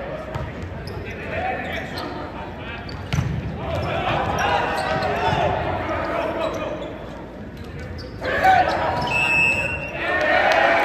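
Indoor volleyball match echoing in a large hall: players and spectators shouting and calling, with the sharp smack of hands striking the ball.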